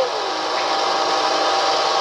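Diesel flowing from a fuel pump nozzle into a vehicle's tank: a steady, even rushing hiss.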